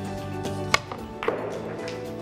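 A billiard cue striking a ball once, a sharp click about three-quarters of a second in, followed half a second later by a second, softer knock. Background music plays throughout.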